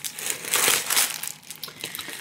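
Plastic bag and packaging crinkling as a sheet of window clings is pulled out and handled, loudest about half a second to a second in, then fading.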